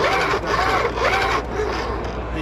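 Humphree interceptor stabilizer units' electric actuators whirring as their blades cycle up and down at maximum stabilizing speed in roll-stabilizer mode. The pitch rises and falls about twice a second, then stops about a second and a half in.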